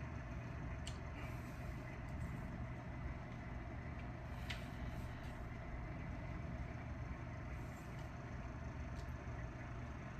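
Steady low background hum, with a few faint clicks.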